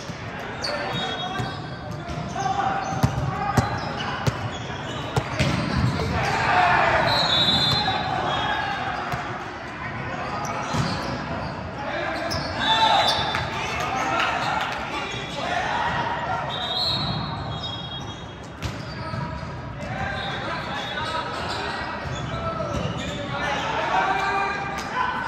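Volleyball gym ambience in a large echoing hall: indistinct voices of players and onlookers, with a volleyball bouncing on the court floor and a few sharp hits.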